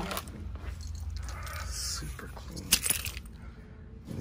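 Light clicks and clatter of store items being handled, with one sharp click about three quarters of the way in, over a low steady hum.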